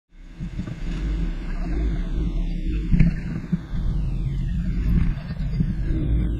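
Electronic music intro: a low rumbling synth bed with a few sharp hits, under a hiss whose tone sweeps downward several times. It fades in at the very start.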